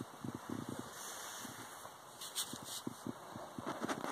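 Irregular crackling and snapping of high-voltage sparks jumping the gaps of a resistor and a resistorless spark plug, fired by an igniter through a capacitor ignition booster, with a few sharper ticks in the middle.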